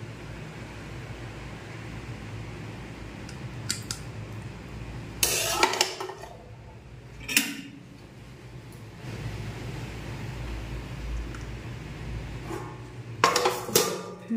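A steel spatula clinking and scraping against an aluminium kadai as fried okra is served, then steel dishes clattering as a plate is set over the pan near the end, over a steady low hum.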